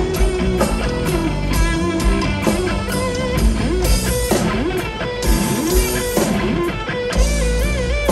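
Rock band playing live over a stadium PA: electric guitar with bent, wavering notes over bass and drums, recorded from within the crowd.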